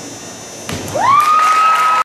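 A gymnast's dismount landing on the mat with a thud, followed by spectators cheering, led by one high voice that rises into a long, held shriek.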